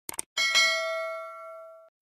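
Notification-bell sound effect from a subscribe-button animation: two quick clicks, then a bright bell ding that rings out and fades over about a second and a half before cutting off.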